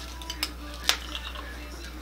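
Green plastic spoon clicking and scraping against the side of a small clear cup while shampoo is spooned out to bring the sample down to about one gram, with two sharp clicks about half a second and a second in.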